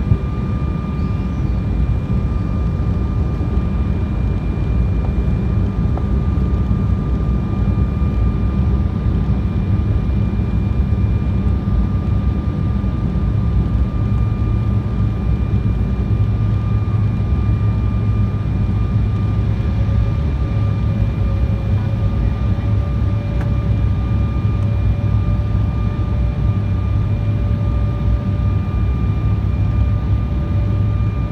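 Steady cabin noise of a jet airliner descending, a low rumble of engines and airflow heard from a window seat over the wing, with a thin steady whine on top. A second, lower whine comes in about twenty seconds in.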